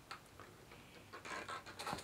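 Clear plastic hamster exercise ball with a mouse running inside, rolling over a woven rug: faint scattered ticks and clicks with short bursts of rattle and rustle about halfway through and near the end.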